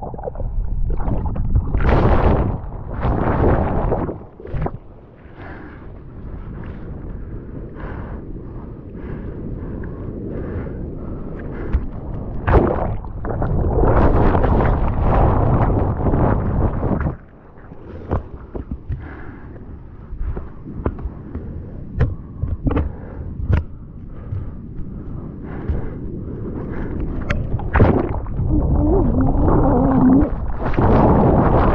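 Ocean waves and whitewash churning around a bodyboarder, heard partly underwater as a muffled low rumble that surges and falls away, with many sharp clicks and pops of water against the waterproof camera housing.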